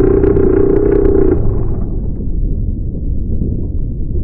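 Sound effect of a small submarine's motor: a deep underwater rumble with a steady hum over it for about the first second and a half, then the rumble alone.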